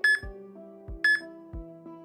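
Workout interval-timer countdown beeps, one short high beep each second, counting down the last seconds of the exercise interval, over background music with a soft bass beat.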